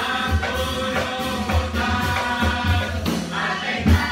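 A group of children singing together as a murga chorus, many voices in unison, over a regular low drum beat. About three seconds in, the sound changes abruptly, and a loud drum hit comes near the end.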